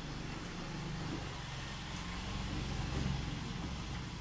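A low, steady hum with no clear events.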